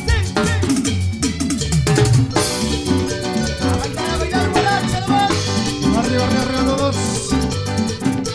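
Guaracha band playing a Latin dance groove with a steady, even bass and drum beat and melodic lines over it.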